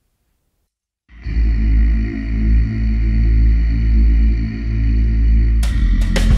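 About a second of silence, then a play-along backing track comes in with a loud, held, bass-heavy chord that barely changes. Near the end, the first sharp drum hits begin.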